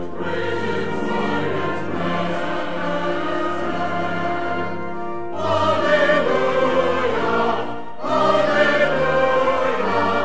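Church choir singing with a brass ensemble of trumpets and trombone: sustained chords that swell louder on two phrases, about five and about eight seconds in.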